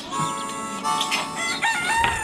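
A rooster crowing over the opening music of a cartoon theme song, with held notes that step and glide in pitch.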